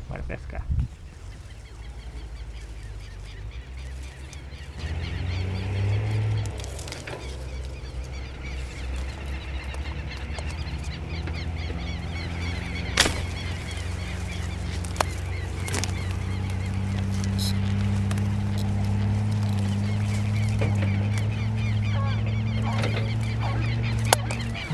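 Birds calling over and over above a steady low hum that slowly grows louder, with two sharp clicks near the middle.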